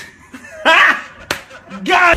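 A man's brief voice sounds without clear words, with a single sharp click about a second and a quarter in.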